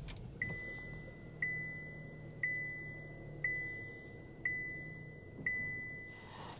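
A click, then a dashboard chime ringing six times, about once a second, each tone fading, over the faint low hum of the Buick Encore GX's engine starting and idling, heard inside the cabin.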